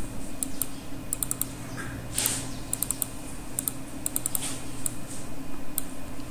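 Computer keyboard clicking in short, irregular clusters of quick keystrokes, over a steady low hum.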